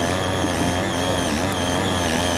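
Small two-stroke gasoline tiller engine running steadily under load as its rotary tines churn through soil, its pitch wavering slightly as the blades bite.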